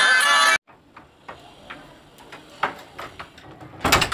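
Background music cuts off abruptly just after the start. Then a quiet room with a few faint clicks, and near the end a loud single clack as a wooden door's top bolt is drawn.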